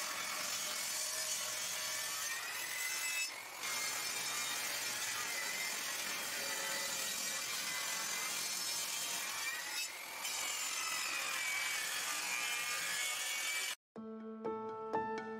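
Craftsman 10-inch table saw ripping a board lengthwise along the fence: a steady high whine of the blade cutting through the wood, dipping briefly about three and a half and ten seconds in. It cuts off suddenly just before the end.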